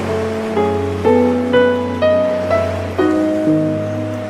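Slow, calm instrumental relaxation music: soft melodic notes entering about twice a second and fading over a steady low bass tone, mixed over a faint sound of ocean waves.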